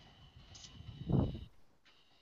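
Faint computer keyboard typing, with a short low-pitched sound about a second in that is the loudest thing heard. A faint steady high whine runs underneath.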